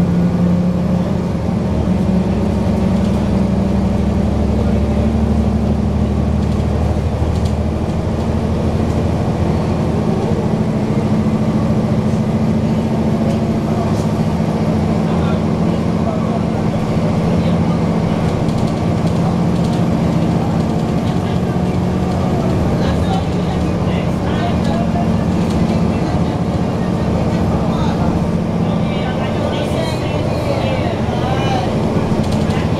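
Cummins ISL straight-six diesel engine of a NABI 416.15 transit bus, heard inside the cabin near the rear, running with a loud, steady drone. Its note steps up about two seconds in, then holds steady.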